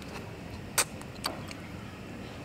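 Mouth sounds of biting and chewing a frozen boba milk tea ice cream bar: one sharp wet click a little under a second in and a fainter one shortly after, over a steady background hum.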